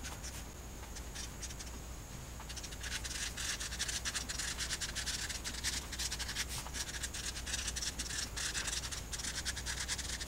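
Marker pen scratching across a white writing surface as it writes in quick strokes. For the first couple of seconds the strokes are sparse and faint; from about three seconds in they come steady and dense as a line of handwriting is written.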